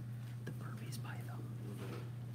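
Quiet whispering voices over a steady low hum in the room.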